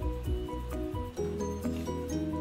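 Background music: steady pitched notes over a regular beat, with the bass and chord changing about a second in.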